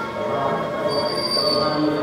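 Bell ringing with a high, sustained tone that rings out loudest for about a second in the middle.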